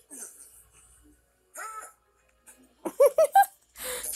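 Cartoon magic sound effect for a transformation: a few quick rising-and-falling tones about three seconds in, then a loud hissing whoosh near the end.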